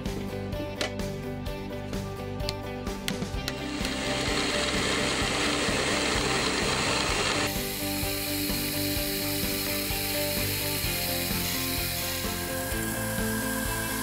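Small milling machine cutting into an O1 tool-steel block, a steady machining noise that starts about four seconds in and gets brighter and hissier around halfway, under background music. A run of light clicks comes before the cutting starts.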